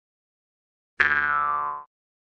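Silence, then about a second in a single short pitched sound-effect tone starts abruptly and dies away in under a second, its upper tones falling off as it fades.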